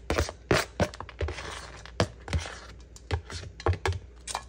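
A kitchen knife scraping and tapping across a plastic cutting board, sweeping chopped salad toppings into a bowl: a run of irregular short scrapes and knocks.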